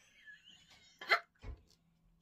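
Soft breathy sounds, then one short, sharp vocal catch a little past the middle, like a hiccup or a sudden gasp, followed by a dull low thump.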